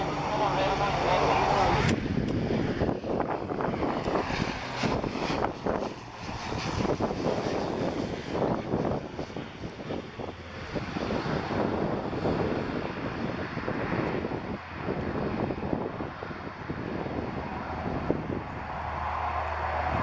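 Beechcraft King Air C90 twin turboprop landing: a steady engine and propeller tone as it comes over the threshold, then a rougher, noisier sound through touchdown and the rollout, settling to a low steady hum as it slows near the end.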